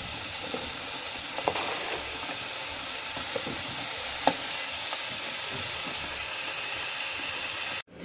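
Redmond glass electric kettle heating water, a steady hiss as it works toward the boil, with a few light clicks.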